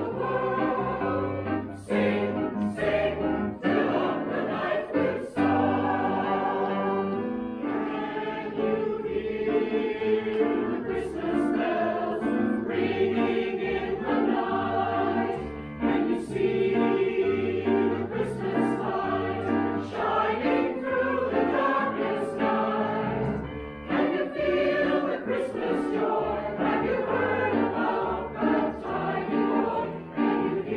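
A choir singing a Christmas choral anthem over an instrumental accompaniment, with a low bass line moving about once a second.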